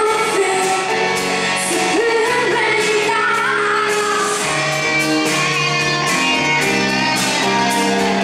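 Female lead singer singing live with a pop band, her voice bending through long held notes over the band's chords in the first half.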